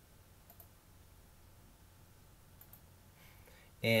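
Two faint computer mouse clicks about two seconds apart, over quiet room tone.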